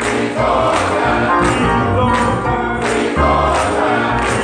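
Men's gospel choir singing, with hand claps on the beat about every two-thirds of a second.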